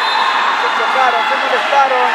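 Voices calling out over a steady hubbub of people.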